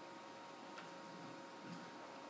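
Quiet room tone: a faint steady hiss with a low steady hum, and one faint click a little under a second in.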